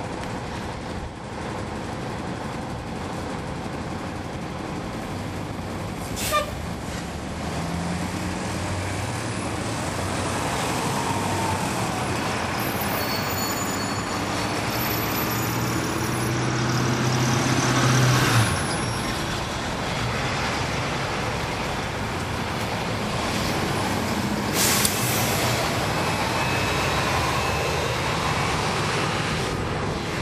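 A 2011 NABI 40-SFW transit bus with a Cummins ISL9 diesel and ZF Ecolife six-speed automatic transmission, heard from inside while under way: the engine pulls, its pitch climbing until it drops off a little past the middle, with the transmission whistling. Two short, sharp air-brake hisses come about six seconds in and about five seconds from the end.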